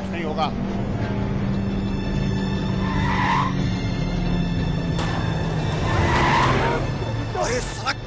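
Car engines running as SUVs drive along a dirt track, under a background music score with a steady low drone. Two brief higher swells come about three and six seconds in.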